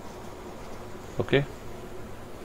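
A steady low buzzing hum in the background of a voice recording, with one short spoken "okay" about a second in.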